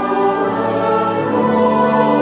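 Mixed church choir singing an anthem in sustained chords, accompanied by organ.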